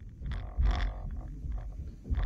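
A few short knocks and low thuds from fencers' footwork on a wooden sports-hall floor, the loudest a little under a second in.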